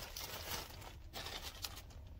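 Clear plastic bag of shredded memory foam crinkling as it is handled, with a few sharper crackles in the second half.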